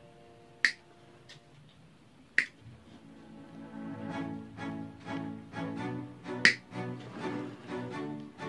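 Three sharp snips of a hand-held cutting pliers working on a wired bonsai, the first under a second in, the next nearly two seconds later and the last about four seconds after that. Background music runs underneath and grows louder and more rhythmic from about halfway.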